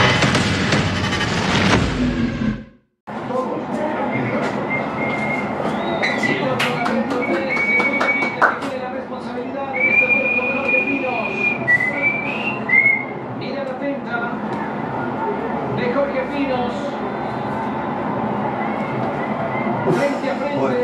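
A short music sting that cuts off about three seconds in, followed by a televised football match heard in a room: a steady stadium crowd with several long whistles around the middle.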